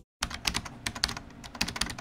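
Computer keyboard typing sound effect: a quick, irregular run of key clicks starting a moment in, accompanying on-screen text being typed out.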